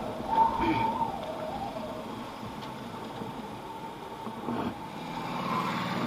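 Motorcycle engine running at low speed, heard from the rider's seat, with a brief thin tone in the first second.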